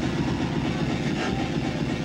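Loud electronic rave music played over a sound system: a dense, steady wash of sound, heaviest in the low end, with no clear beat or melody.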